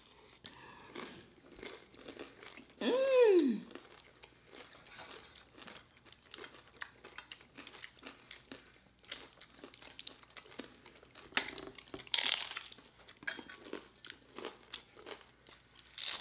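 Close-miked crunching and chewing of crispy taco shells, with short sharp crunches throughout. About three seconds in, a hummed "mmm" rises and falls in pitch.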